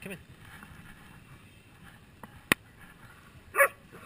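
A dog barks once, short and sharp, about three and a half seconds in. A single sharp click comes a second before it.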